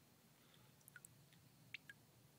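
Near silence, with a few faint short ticks about a second in and again near the end.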